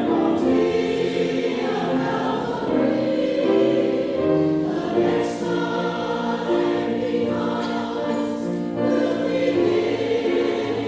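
Church choir of mixed men's and women's voices singing in harmony with piano accompaniment, holding sustained chords that change about every second.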